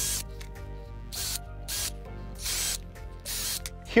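Cordless drill running in several short, irregular bursts, boring holes through a paper template into a wooden platform, with background music underneath.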